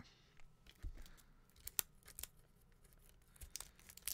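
Faint crinkling and scattered sharp clicks of a CD's plastic packaging being handled.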